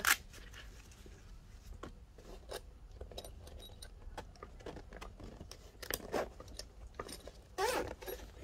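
Zip on a fabric tool carry bag being tugged and pulled open in short scratchy runs, with rustling of the bag's fabric as it is handled; a longer, louder zip run comes near the end.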